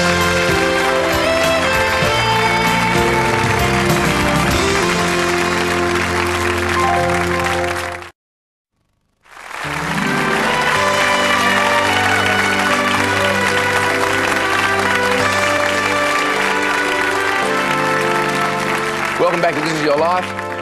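Studio audience applauding over music with long held notes. About eight seconds in the sound drops to silence for about a second, then the music and applause come back.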